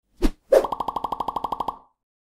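Logo-animation sound effect: a short pop, then a second pop that runs into a fast, even fluttering tone of about a dozen pulses a second, fading out before the end.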